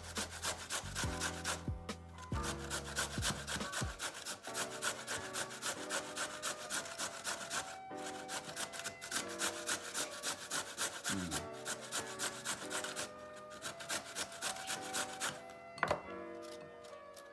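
A carrot being grated on a stainless steel box grater: quick, rhythmic scraping strokes with a few short pauses. Background music plays underneath.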